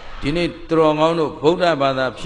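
Speech only: a man preaching in Burmese into a microphone.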